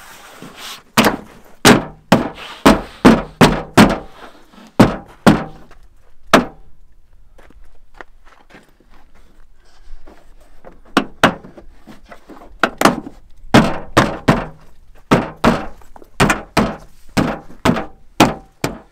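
A plastic liftgate trim panel being pressed and thumped home by hand, its retaining clips popping into the liftgate: a quick series of sharp thumps, several a second, with a pause of about four seconds in the middle.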